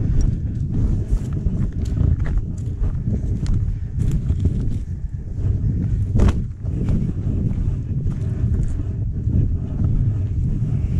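Hikers' footsteps on a dirt trail strewn with dry leaves, over a steady low rumble, with one louder knock about six seconds in.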